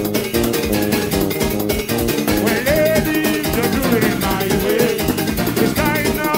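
Live soca band music: a steady beat with electric guitar and bass guitar, and a wavering melodic lead line that comes in about two and a half seconds in.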